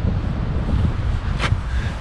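Wind buffeting the microphone: a steady low rumble, with a brief rustle about one and a half seconds in.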